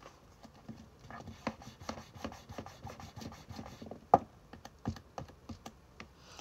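Pen writing on paper: a run of short scratching strokes, with one sharp tap about four seconds in and a few lighter taps after.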